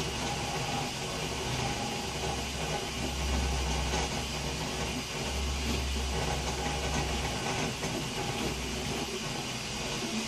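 Original Prusa i3 3D printer at work: its stepper motors and cooling fans run steadily while the print head lays down a layer. The low motor hum grows louder for two stretches in the middle as the head changes its moves.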